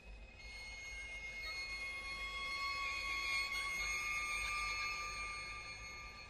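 A string trio of violin, viola and cello plays long, high held notes in a contemporary piece. A lower held note joins about a second and a half in. The sound swells toward the middle and fades near the end.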